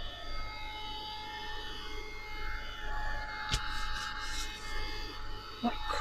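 Tim Holtz craft heat gun running steadily with a fan whine while it dries a decoupaged napkin. A sharp click comes about halfway through.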